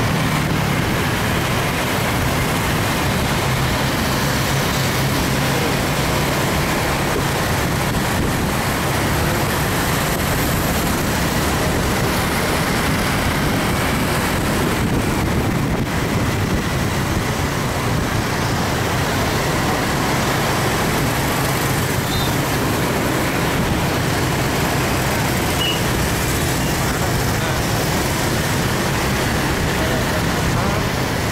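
Steady road and traffic noise heard from a moving vehicle among motorcycles and cars, with a low engine hum underneath.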